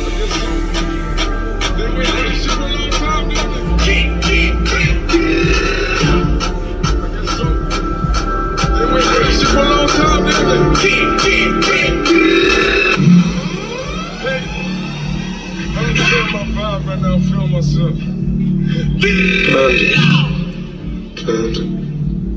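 Bass-heavy music with vocals, played loud through a 100,000-watt car audio system and heard from inside the cabin. About thirteen seconds in, the track changes to sliding, curving tones over a pulsing bass.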